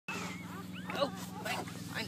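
Newborn puppies squeaking and whimpering, a string of short high squeaks that rise and fall in pitch, as one is lifted by hand. A steady low hum runs underneath.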